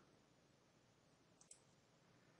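Near silence: room tone, with one faint computer-mouse click about one and a half seconds in.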